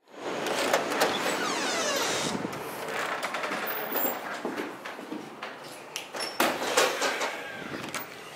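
A glass entrance door pulled open by its metal handle, with street noise through the opening, then footsteps, clicks and knocks as someone walks into an indoor hallway.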